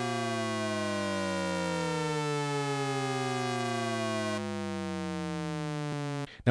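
Synthesized Shepard tone from Arturia Pigments 4's Harmonic engine: a dense stack of partials gliding steadily downward in pitch, so that it seems to fall without ever arriving. About four seconds in, the top end thins slightly and it gets a little quieter.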